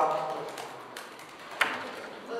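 A man's voice trails off, then a few faint clicks and one sharp click about one and a half seconds in, in a large room.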